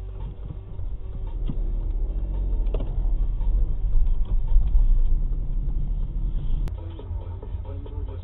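Low, steady rumble of a car's engine and tyres heard from inside the cabin, growing louder over the first few seconds as the car moves off, then easing.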